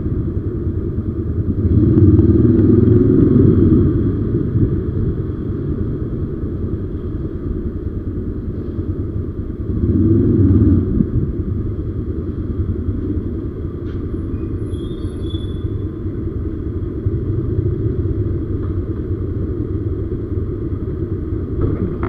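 Single-cylinder engine of a TVS Apache RTR 160 motorcycle running at low speed, swelling louder twice, about two and ten seconds in, as the throttle opens. The sound carries the echo of an enclosed parking garage.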